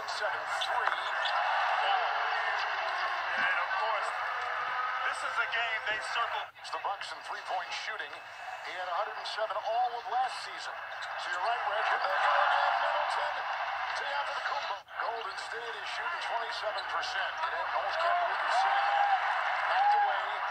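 Basketball TV broadcast audio: commentators talking over steady arena crowd noise. The sound drops out sharply twice, about six and a half and fifteen seconds in.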